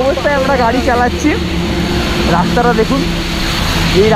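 A man's voice talking over a steady engine hum and the hiss of heavy rain. The hum comes through most plainly in the second half.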